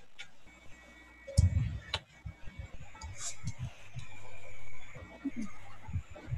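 Stray noise from unmuted participant microphones on a video conference call: scattered clicks and short low knocks, with a faint steady whine building from about three seconds in. The host takes the noise for open microphones feeding back.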